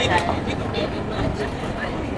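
Busy street ambience: passers-by talking in snatches over a steady low rumble of motor traffic.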